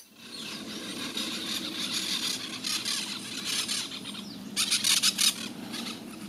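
Outdoor nature ambience among trees: dense, high-pitched, rapidly pulsing wildlife calls run throughout and grow louder for a moment about four and a half seconds in.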